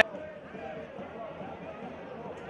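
Faint pitch-side ambience of a football match: distant voices and shouts over a low, steady hiss.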